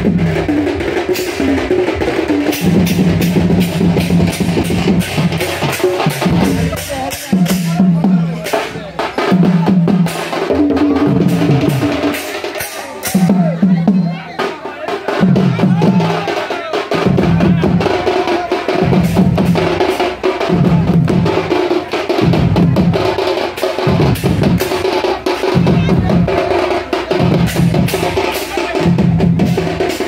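Sambalpuri baja band playing a fast, driving beat on drums, with a loud low tone pulsing over and over in step with the rhythm.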